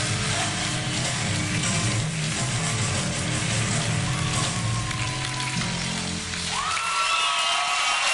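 A live rock band plays electric guitars, bass and drums. About seven seconds in, the bass and drums stop as the song ends, leaving a few held high notes that bend upward.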